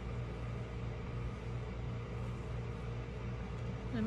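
A steady low hum that holds level and unchanging throughout.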